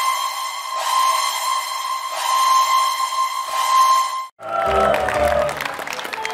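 A held electronic music tone with bright overtones, swelling slightly a few times, that cuts off about four seconds in; after a brief gap, fuller studio-show audio with music starts.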